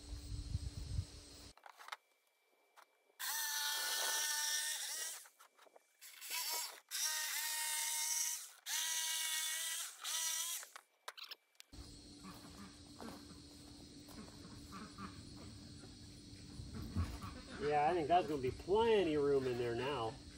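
Corded jigsaw cutting an OSB sheet: a high, steady motor-and-blade whine in four runs of one to two seconds, starting and stopping between cuts. Talking follows near the end.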